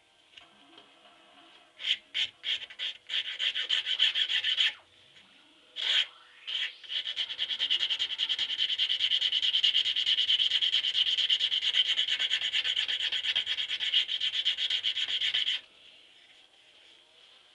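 Small hand file rasping across a Burmese blackwood grip blank in quick, even back-and-forth strokes: a short run of strokes about two seconds in, a brief pause, then a long steady run that stops suddenly shortly before the end.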